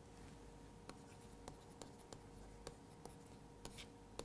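Faint ticks and light scratching of a stylus tip on a tablet surface as words are handwritten, with small taps coming unevenly.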